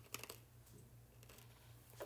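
Near silence: room tone with a steady low hum and a few faint clicks, the clearest just after the start.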